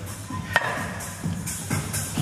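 Background music with a steady beat, and a single sharp metallic clank of an iron weight plate about half a second in, ringing briefly.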